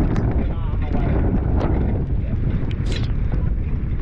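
Steady wind noise buffeting the microphone of a bicycle riding a wet, muddy dirt road, with the low rumble of tyres rolling through mud and a few brief sharp ticks.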